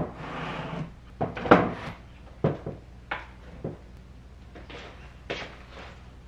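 Picture frames being handled and hung on a hallway wall: a short rustle, then several separate light knocks and taps of the frames against the wall.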